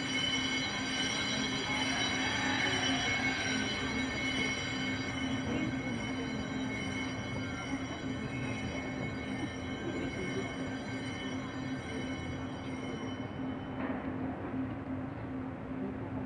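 A long held organ chord, steady and unchanging, its upper notes fading out about thirteen seconds in while the lower notes sound on.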